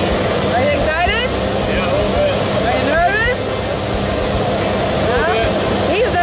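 Jump plane's engine and propeller droning steadily inside the cabin during the climb, with raised voices over it.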